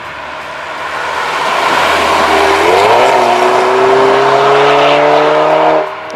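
Alfa Romeo Giulietta Veloce S's 1750 TBi turbocharged inline four-cylinder accelerating hard past on the road, growing louder as it nears. The engine note climbs steeply a little before halfway, then keeps rising slowly, and the sound cuts off suddenly just before the end.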